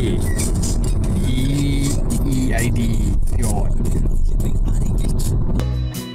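Car cabin noise while driving: steady engine and road rumble, with brief talk over it. Near the end it cuts abruptly to guitar music.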